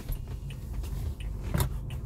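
Car engine idling, heard as a steady low hum inside the cabin of the stationary car, with faint light ticks and one sharp click about one and a half seconds in.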